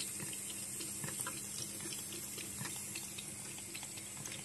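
Thin stream of water running from a sink tap, with faint, irregular clicks of a cat lapping at the stream and mouthing the spout.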